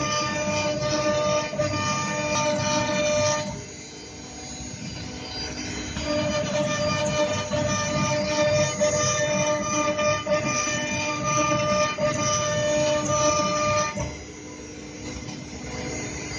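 CNC router carving a Corian solid-surface sheet, its spindle and drive motors whining with several held steady tones over the rough cutting noise. The tones drop away twice, a few seconds in and near the end, leaving a quieter hiss.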